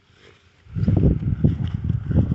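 Wind buffeting the handheld camera's microphone: a loud, irregular low rumble that starts suddenly about a second in.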